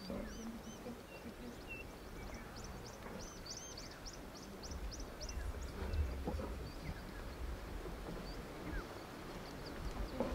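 Faint sounds of a lioness feeding on a freshly killed waterbuck, with a few short soft sounds from the carcass. A small bird calls a quick run of high chirps in the first few seconds.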